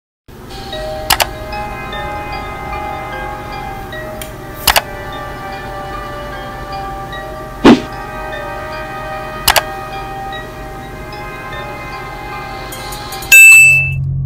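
Background music of sustained chords, cut by four sharp hits spread through it, ending in a loud bright ding near the end.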